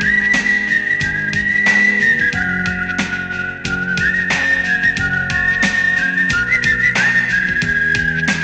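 Instrumental interlude of a Telugu film song: a high, whistle-like lead melody holds long notes with short slides between them, over a bass line and a steady percussion beat.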